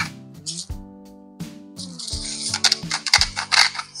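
A black-pepper grinder being twisted over the meat, giving a dry, gritty rasp of fine clicks: briefly near the start, then longer in the second half. Background music with held notes and a bass line plays under it.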